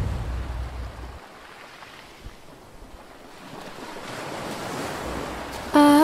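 Ocean surf washing over rocks, swelling louder through the second half, as the tail of a low drum rumble fades out in the first second. A voice begins a held sung note just before the end.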